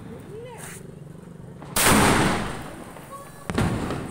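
Aerial firework going off: a sudden loud blast about two seconds in that dies away over about a second, then a shorter, sharper crack about a second and a half later as green stars burst overhead.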